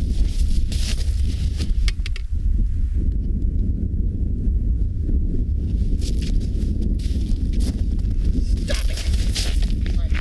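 Wind rumbling steadily on the microphone, with boots crunching on snow-covered ice in short bursts as two people walk up to an ice-fishing hole and kneel beside it.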